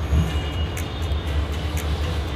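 Faint audio playing from the earcups of Sony headphones converted to Bluetooth, held up to the microphone, over a steady low rumble with a few light clicks.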